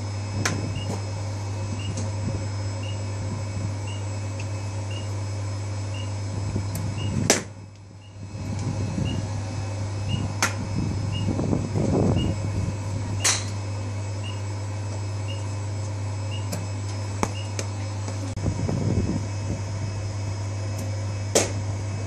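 Steady electric hum of a batting-cage pitching machine with a faint tick about once a second, broken by about six sharp cracks a few seconds apart as balls are pitched and hit.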